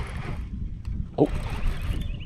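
Low, steady wind rumble on the microphone. About a second in comes a man's short surprised "oh" as a fish strikes his lure.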